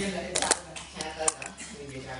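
A quick run of sharp clicks about half a second in, with a person's voice around them.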